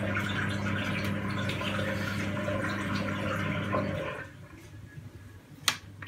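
Beko WMB81221LS washing machine in test mode, running water through the machine with a steady electrical hum and the sound of water, while the drum stays still because its motor has failed. The hum and water stop about four seconds in, and a single sharp click follows near the end.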